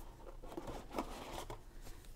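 Faint rustling and scraping of a cardboard board-game box being handled, with a soft scrape about a second in as the lid comes off.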